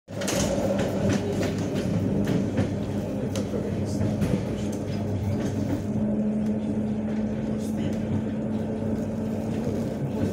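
Inside a moving electric commuter train: a steady running rumble and hum, with short sharp clicks from the wheels passing over rail joints and points. About halfway through, the hum settles into one even tone.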